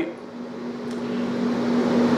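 Steady low mechanical hum under a rush of noise that grows gradually louder, like a vehicle passing.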